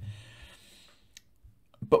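A single short keystroke click from a computer keyboard about a second in, against near silence, as a search term is typed.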